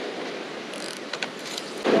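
Surf washing on the beach, with a few short clicks and knocks as a surf rod and spinning reel are handled and lifted out of a PVC sand-spike holder, about a second in.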